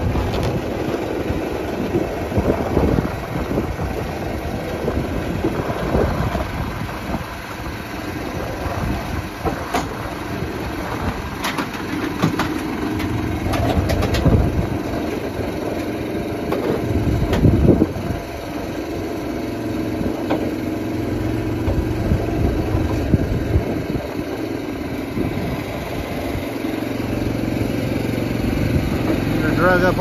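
An engine running steadily, its low note stepping up and down now and then, as machinery pulls a portable building onto a trailer. A few sharp knocks come in the middle.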